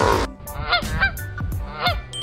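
Goose honking sound effect: several short, nasal honks in quick succession, laid in as a pun on "goosebumps".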